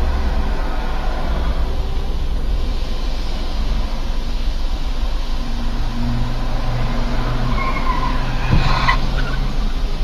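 A car driving: steady engine and road rumble, with a short knock about eight and a half seconds in.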